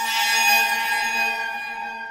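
A sustained electronic bell-like tone: a chord of steady pitches with bright ringing overtones that swells in at the start and slowly fades.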